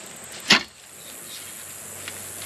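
Clamshell post hole digger driven down into hard, rocky soil: one sharp strike about half a second in.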